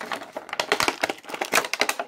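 Thin clear plastic packaging tray crinkling and clicking as a toy figure is pulled out of it: a quick run of sharp plastic clicks and crackles.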